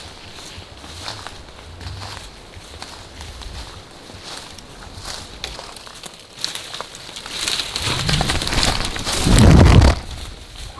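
Footsteps crunching on dry leaf litter and twigs, with scattered snaps, then a rising rush of running, rustling and camera jostling near the end, loudest in the last second, as people hurry away from a charging moose.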